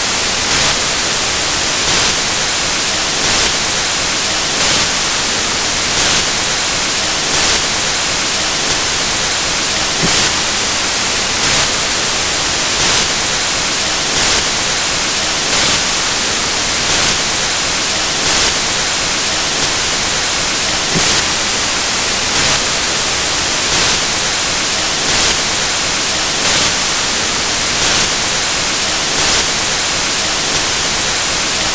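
Loud, steady static hiss filling the recording, with a soft pulse in it about every second and a half; it drowns out the lecturer's voice entirely.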